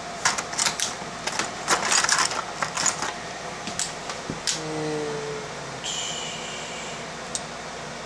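Small metal tools and wire being handled on a stone countertop: scattered light clicks and rattles for the first few seconds. These are followed by a faint hum lasting about a second and then a brief higher-pitched tone.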